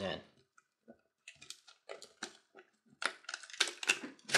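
Stiff rawhide lace clicking and rustling against a glass jar as coils of it are pushed in by hand. There are sparse light clicks at first, then a louder, denser cluster of clicks near the end.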